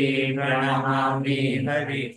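A man chanting Vaishnava devotional prayers in a steady, sung recitation tone.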